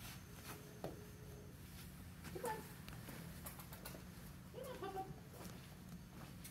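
Quiet room with a few faint, short, high-pitched vocal sounds: one about a second in, one rising at two and a half seconds, and a small cluster near five seconds.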